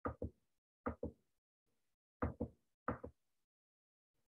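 Four quick double clicks of a computer mouse, each pair of sharp clicks a fraction of a second apart.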